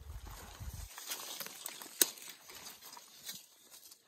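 Leaves and twigs rustling and crackling as branches are pushed aside by hand while walking through brush, with scattered small clicks and one sharp snap about two seconds in. A low rumble sits under the first second.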